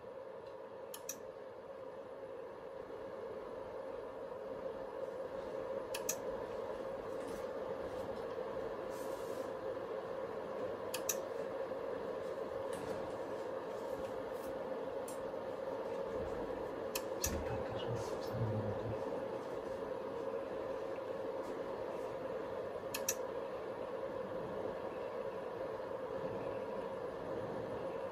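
Antenna rotator motor running steadily with a hum as it turns the satellite Yagi antenna back to its park position after the pass. Occasional sharp clicks, and a few low knocks about two-thirds of the way through.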